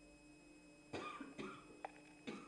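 A person coughing twice in quick succession, about a second in, followed by a short click.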